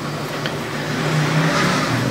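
Motor vehicle traffic: a steady engine hum with road noise that swells a little past the middle.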